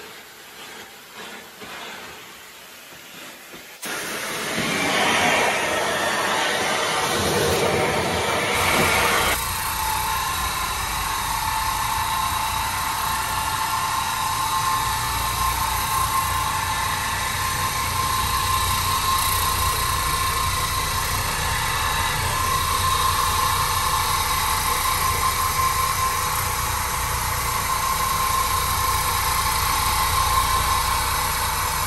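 Oreck Orbiter orbital floor machine running steadily, its brush scrubbing wet tile and grout: a steady motor hum with a constant whine. A louder rushing noise starts about four seconds in and gives way to this steady machine sound at about nine seconds.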